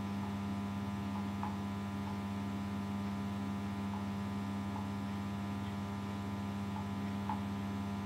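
A steady low electrical hum, with a few faint small ticks at irregular moments.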